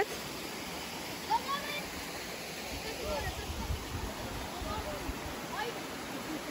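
A steady rushing noise like running water, with faint distant voices over it and a low rumble in the middle.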